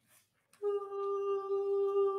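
A student choir starts a single held note a cappella about half a second in, and keeps it steady.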